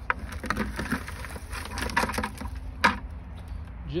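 Aged manure with straw tipped from a plastic bucket into a plastic plant pot: irregular rustling and scattered knocks, with a sharper knock near three seconds.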